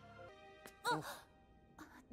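Quiet anime soundtrack: soft background music of sustained tones. About a second in comes a brief high-pitched voice sound that rises and falls in pitch, like a sigh or short vocal exclamation.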